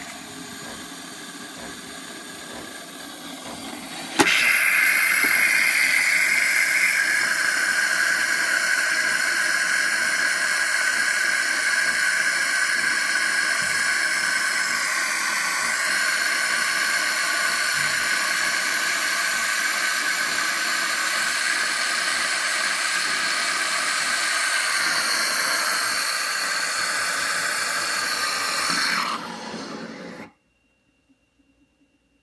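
Saeco GranBaristo espresso machine frothing milk. It is quieter for the first four seconds, then with a click it goes over to a loud, steady hissing whine while hot frothed milk runs from the spout. The sound stops about a second before the end.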